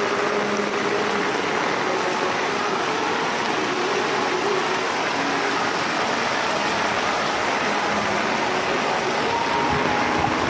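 Steady rush of heavy rain and floodwater flowing across a road, an even noise that holds at one level throughout.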